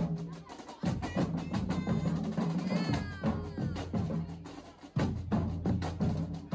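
Marching band drumline playing a cadence: fast, dense drum strokes over pitched bass drums. It drops back briefly near the start and comes back in hard about a second in, then dips again and re-enters loudly just before five seconds.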